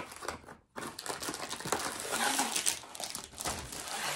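Plastic wrapping crinkling and rustling as a plastic-wrapped tube is slid out of a long cardboard box, continuous after a brief pause just before one second in.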